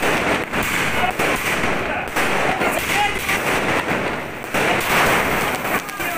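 Fireworks and firecrackers going off in rapid succession: a near-continuous crackle of many sharp bangs with no real pause.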